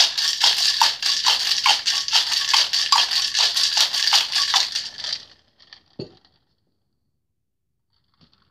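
Ice cubes rattling inside a Boston shaker (stainless tin joined to a mixing glass) shaken hard for a cocktail, about two and a half strokes a second. The shaking stops about five seconds in, followed by a single knock.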